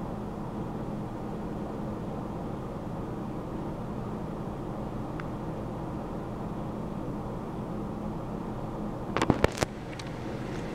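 Steady low hum and hiss of room tone, with a quick run of three or four sharp clicks about nine seconds in.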